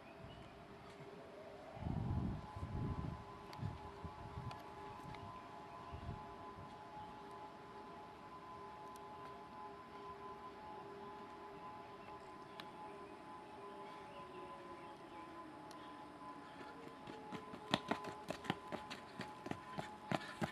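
A faint, distant outdoor warning siren rises in pitch over the first couple of seconds, then holds a steady tone, with a few low thumps about two seconds in. In the last few seconds, quick footfalls on a dirt trail grow louder as a runner comes closer.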